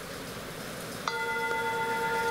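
A meditation timer app's bell chime strikes once about a second in, after quiet room tone. It is a single bell tone with several overtones that rings on steadily, sounding like a country church bell.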